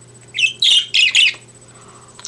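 A pet bird calling: a quick run of three or four short, shrill chirps and squawks starting about half a second in and lasting about a second.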